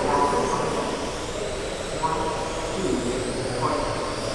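High whine of 1/12-scale GT12 electric RC cars' brushless motors, rising and falling in pitch as the cars accelerate and brake around the track, echoing in a large hall over indistinct voices.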